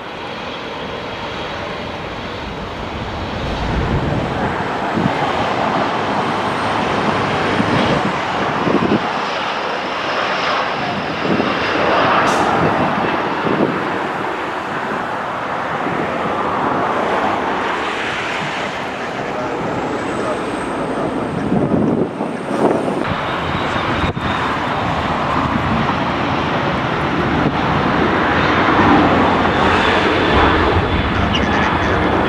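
Jet engines of a Boeing 777 at taxi power: a steady rushing noise, with a faint high whine that rises slightly twice.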